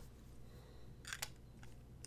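Light clicks from a plastic fountain pen being lifted off the paper and handled: a quick cluster of sharp clicks about a second in, then a couple of fainter ticks.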